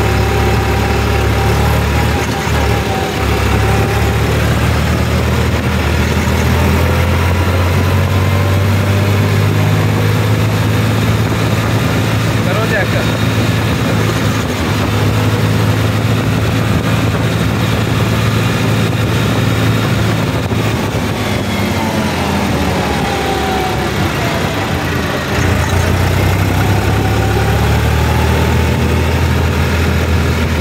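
New Holland 3630 4WD tractor's three-cylinder diesel engine running steadily while the tractor drives along the road, heard from the driver's seat. The engine note eases briefly about two-thirds of the way through, then picks up again.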